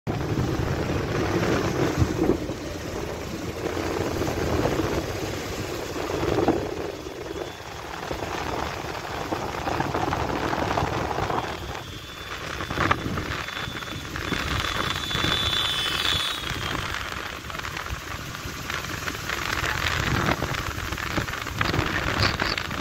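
Road noise and wind buffeting the microphone from a moving vehicle, a rough noise that swells and dips every few seconds.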